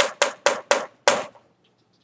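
A whiteboard marker tapped sharply against the whiteboard about five times, roughly four taps a second, stopping a little past a second in.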